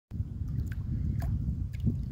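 Low rumbling noise on a phone's microphone outdoors, with a few faint clicks.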